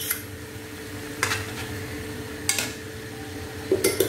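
A utensil knocking lightly against a saucepan three times, about a second and a quarter apart, while crushed pepper is added to boiling banana cubes. A steady low hum runs underneath.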